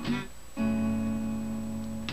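Fender electric guitar playing clean chords. A short strum sounds right at the start, then a new chord is struck about half a second in and left to ring.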